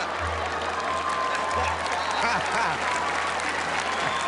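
Studio audience laughing and applauding.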